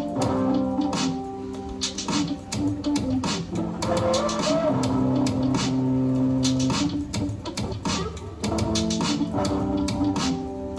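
Guitar music with a bass line, played back from an AKAI GX-635D reel-to-reel tape deck through loudspeakers.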